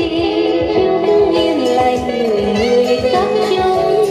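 Song with a singing voice and a steady bass beat playing through the speakers of a Toshiba RT-8700S (BomBeat X1) radio-cassette boombox, as a test of its sound.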